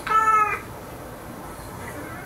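A cat meowing once, a short call of about half a second right at the start, falling slightly in pitch; the rest is faint.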